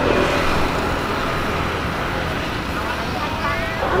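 Steady street traffic noise from passing vehicles, a continuous roar with a deep low rumble that is a little louder at the start.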